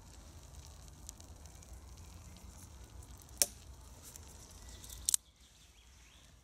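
Close rustling and low rumble from a person moving right next to the microphone, with a few sharp clicks: the loudest about three and a half seconds in, and a quick double click just after five seconds, when the rumble stops.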